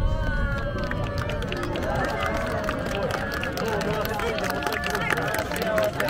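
A crowd of fireworks spectators talking and exclaiming over one another just after a shell's burst, with scattered faint crackles.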